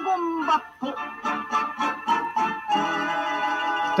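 Theme song of a 1960s Japanese cartoon: a voice sings the end of a line, then the band plays short accented chords about four times a second and settles on a long held chord.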